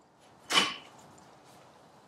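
A loaded barbell lowered from the shoulders after a clean, giving one short knock with a brief metallic ring about half a second in.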